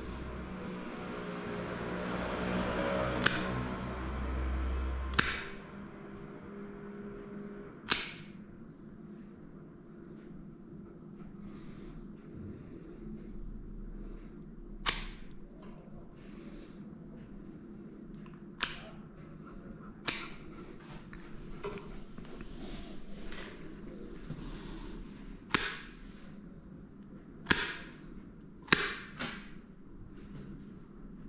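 Plier-style dog nail clipper snipping through the tips of a dog's toenails: about nine sharp, crisp clicks spaced unevenly a few seconds apart. A steadier pitched sound runs under the first five seconds.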